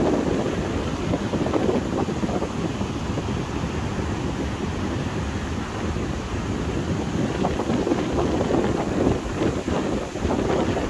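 Strong wind buffeting the microphone: a dense, gusting low rumble that rises and falls throughout.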